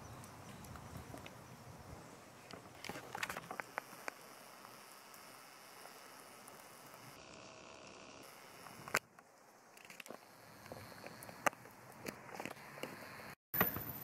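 Quiet outdoor ambience with a faint steady hiss and a few scattered faint clicks and rustles from camera handling.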